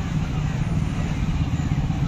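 Steady low rumble of street background noise.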